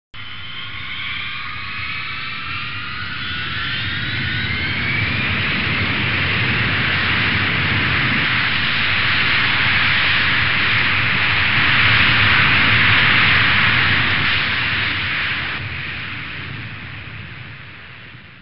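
Jet airliner engines: a whine of several tones rising in pitch over the first few seconds, over a rushing noise that swells to its loudest about two thirds of the way in and then fades away near the end.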